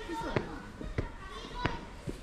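Footsteps climbing steps: three thuds about two-thirds of a second apart.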